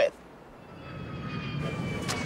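Jet airliner engines whining and swelling in level, several high tones slowly falling in pitch over a low rumble.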